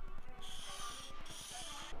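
Felt-tip marker drawn across paper in two strokes, a high scratchy hiss, crossing items off a list, over faint background music.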